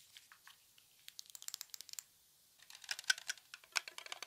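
Close-miked ASMR trigger sound: quick runs of small crisp clicks and crackles, one cluster about a second in and a busier one from about two and a half seconds on.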